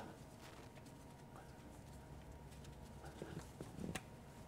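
Faint steady hum with a few light clicks from a steel fuel injector hard line and its nut being handled and started by hand onto the injector. The clicks come mostly in the last second, the loudest just before the end.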